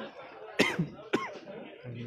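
A person coughing twice, about half a second apart, over faint background voices.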